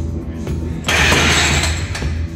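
A loaded Olympic barbell, about 190 kg of steel bar and plates, being racked on the bench uprights. Just under a second in comes a loud clatter of metal lasting about a second, over steady background music.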